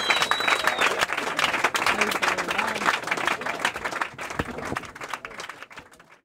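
Small club audience clapping and cheering, with one long whistle that ends about a second in; the applause dies away toward the end.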